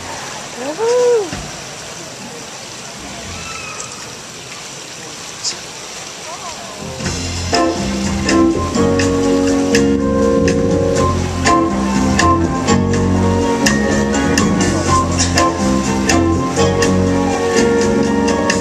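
Low background noise with a single rising-and-falling whoop from the audience. About seven seconds in, a live band with horn section and symphony orchestra starts a jazzed-up arrangement of a Filipino kundiman love ballad and plays on loudly.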